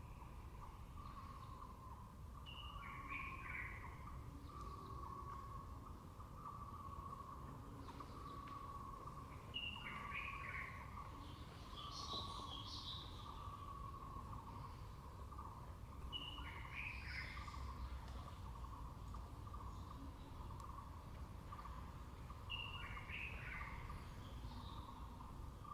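Birds calling in the background: a steady run of low repeated notes, with a short, higher falling phrase that comes back about every seven seconds and a brief high call near the middle.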